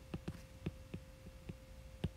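Faint, irregular ticks and taps of a stylus tip on a tablet's glass screen during handwriting, a few a second, over a steady low electrical hum.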